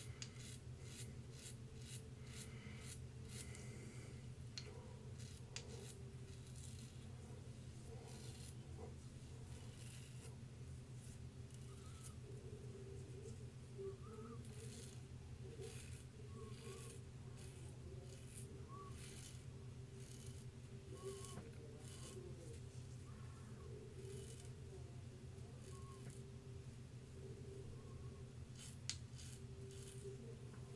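Double-edge safety razor scraping through lathered stubble in many short, irregular strokes, faint, over a low steady hum.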